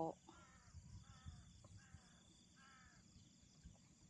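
Faint distant bird calls: four short calls, each well under half a second, spaced about three-quarters of a second apart, over quiet outdoor background.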